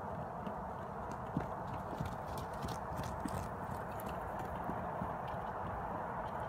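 Horse's hoofbeats on dirt arena footing, an irregular run of soft thuds and clicks, thickest in the middle of the clip, over a steady hiss.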